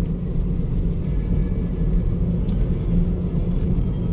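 Steady low rumble of a car in motion on a city road, engine and tyre noise heard from inside the cabin.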